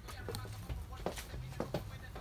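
A few light, sharp clicks, about five, spread over a faint steady low hum.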